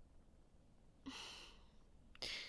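A woman's soft, breathy sigh about a second in, after near silence.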